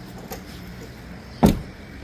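A car door, on a BMW 7 Series saloon, shut with one solid thud about one and a half seconds in, after a small click.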